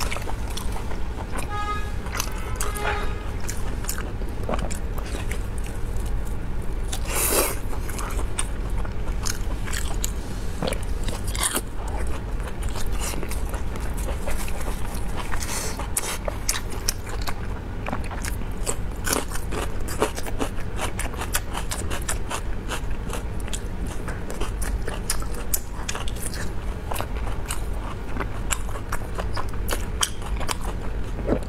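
Close-miked biting and chewing of braised pork large intestine, many short clicks and smacks following one another throughout.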